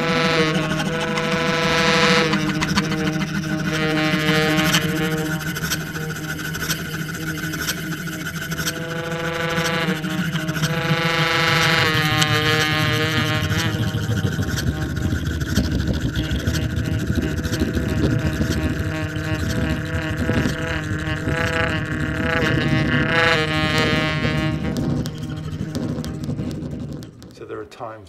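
Baritone saxophone and bowed daxophone improvising together in real time: layered, shifting pitched tones over a low held note through the first half. The playing stops about a second before the end.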